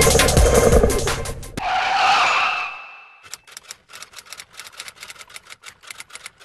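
Electronic dance music with a heavy beat that cuts off about a second and a half in. A whoosh sound effect rises and fades, then a quick irregular run of sharp clicks follows, like a typewriter text effect.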